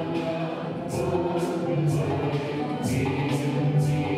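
A choir singing a hymn in long held notes, the words' 's' sounds standing out several times.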